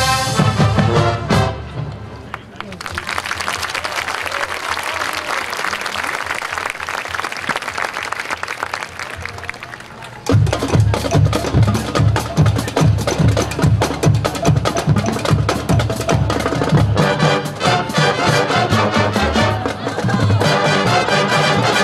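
High school marching band music: a brass chord with drum hits at the start, a quieter hissy stretch with no clear notes, then about halfway through a loud, steady drum groove kicks in, with the brass coming back in near the end.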